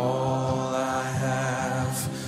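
Slow worship music: one long sung note held steady over a sustained instrumental backing, breaking off near the end.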